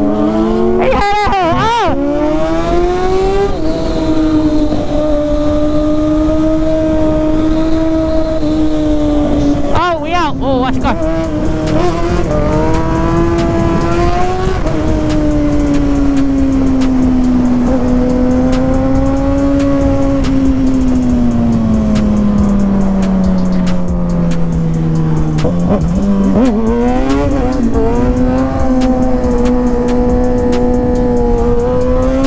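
Kawasaki ZX-6R's inline-four engine running at high revs through a long wheelie. The pitch wavers with throttle changes in the first couple of seconds and again about ten seconds in, then sags slowly and climbs back near the end.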